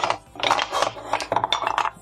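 Wooden pieces of a Rombol Keyholes interlocking puzzle clacking against each other and the tabletop as they are pulled apart and set down: a quick, uneven run of small knocks, several a second.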